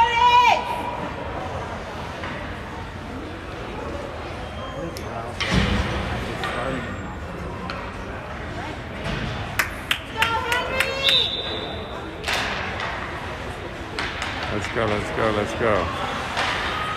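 Indoor ice rink during a youth hockey game: voices of players and spectators echoing in the arena, sharp stick clacks around ten seconds in, and a thud about five and a half seconds in. A short, steady, high whistle blast sounds about eleven seconds in.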